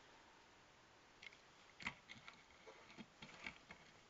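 Near silence with a few faint, short clicks and taps, the loudest about two seconds in, as of small objects being handled.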